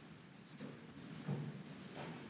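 Felt-tip marker writing Chinese characters on paper: a few faint, short scratchy strokes.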